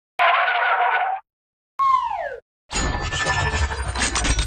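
Sound effects for an animated logo intro. First a click and about a second of noisy burst, then a short tone that falls steeply in pitch, then a dense, swelling effect that rises into the intro music.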